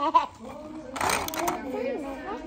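Background talk of children and adults in a room, with a short sharp sound just after the start and a brief noisy burst about a second in.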